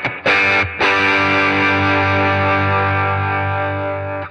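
Electric guitar played through an overdriven amp: a chord struck and cut short, then another chord struck about a second in and left ringing, slowly fading.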